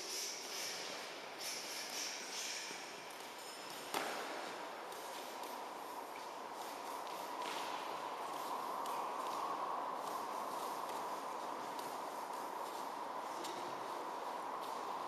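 Boxing gloves striking and feet shuffling on a gym floor during a punching drill, with scattered knocks and one sharp smack about four seconds in. After that a steady hum comes up and holds.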